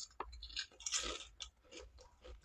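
Mouth crunching and chewing a kettle-cooked mesquite barbecue potato chip: a few irregular crunches, the loudest about halfway through.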